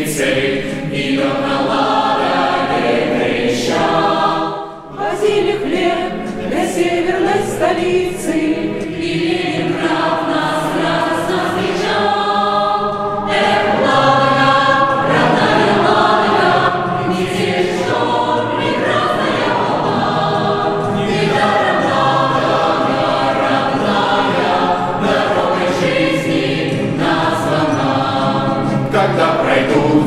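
Mixed choir of men's and women's voices singing a cappella in Russian, with a brief breath pause between phrases about five seconds in.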